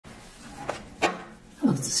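Two sharp taps of a tarot deck on a wooden tabletop, about two-thirds of a second and a second in, the second one louder; speech begins near the end.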